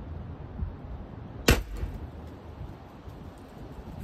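A single shot from a T4E CO2-powered .68-calibre less-lethal pistol about a second and a half in: one sharp crack with a brief ring after it.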